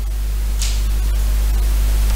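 Steady low electrical mains hum with a faint hiss in the microphone's signal, with a brief high hiss about half a second in.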